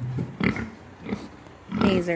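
Pigs grunting at close range: a few short, low grunts spread through the moment, the loudest near the end.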